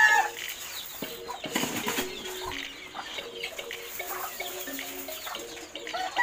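Chickens clucking on and off, with scattered soft knocks and rustling.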